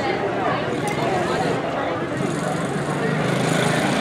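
Quarter midget race car's small single-cylinder engine running, growing louder in the second half as the car comes closer, with people talking over it.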